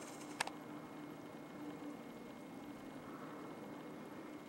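Quiet room-tone hiss with a faint steady low hum and a single sharp click about half a second in.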